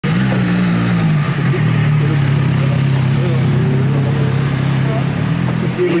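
Car engine idling steadily close by, a low even hum.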